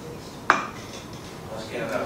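A single sharp clink of a hard object about half a second in, with a brief ring.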